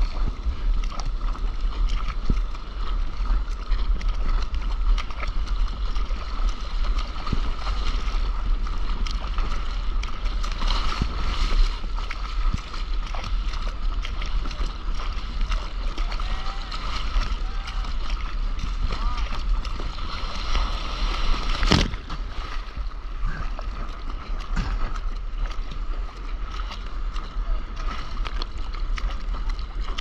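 Sea water rushing and splashing around a soft-top surfboard as it is paddled out through broken waves, with heavy low rumble of water and wind buffeting an action camera's microphone. A single sharp knock comes about two-thirds of the way through.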